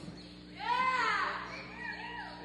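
A high-pitched voice from the stands calling out once, rising then falling over about half a second, followed by a shorter call near the end.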